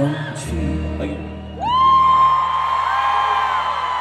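The last low chord of a live pop ballad is held in an arena. From about a second and a half in, a fan's high-pitched scream rises and is held, louder than the music, and other screams join it near the end.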